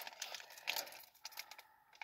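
Chocolate bar wrapper crinkling and tearing as it is opened, in short faint bursts that stop shortly before the end.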